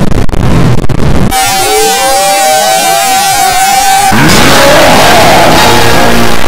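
Very loud, heavily distorted cacophony of noise and music. About a second and a half in it turns into a dense hiss with a held high tone, and about four seconds in it turns into a harsher noise with a rising sweep.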